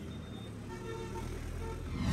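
Bus engine and street traffic noise, fairly faint and steady, with a low rumble and a few brief faint tones partway through.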